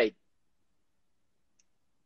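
A man's spoken word ends right at the start, then near silence, broken only by one faint tiny click about one and a half seconds in.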